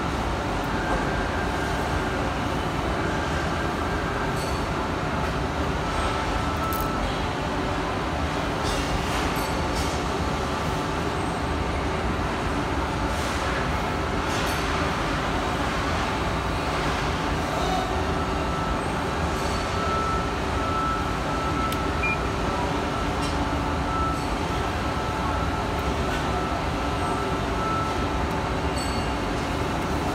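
Steady machine hum from an Amada HG1003 ATC press brake running during setup, with a few faint clicks.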